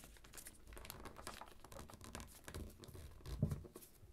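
Square of origami paper being folded and creased by fingers: faint, quick crinkles and rustles of paper, with a soft bump on the tabletop about three and a half seconds in.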